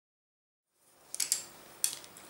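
Silence, then low room tone with a quick pair of light clicks just over a second in and one more near the end, from drawing tools being handled and set down on the paper.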